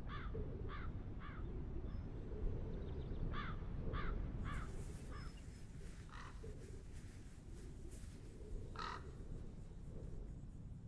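A bird giving short harsh calls: two runs of three about half a second apart, then two single calls, faint over a low steady rumble.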